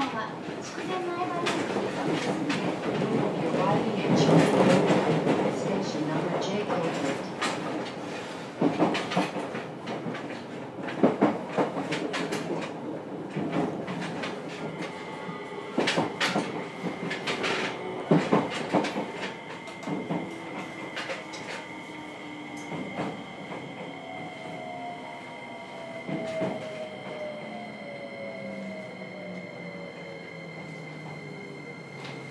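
Onboard running sound of a JR Kyushu 303 series electric train, heard from a motor car with a Hitachi IGBT VVVF inverter: loud rolling noise with sharp knocks of the wheels over rail joints and points. In the second half the train slows and the inverter's tones slide down in pitch, with a steady high whine above them.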